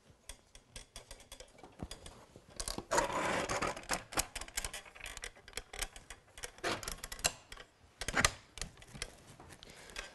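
Clicks and rattles of a camping kitchen table's metal legs as its adjustable feet are pulled down and locked into place, with a longer rattling scrape about three seconds in.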